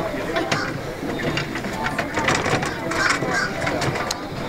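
Background chatter of several people talking at outdoor tables, with scattered light clicks and knocks.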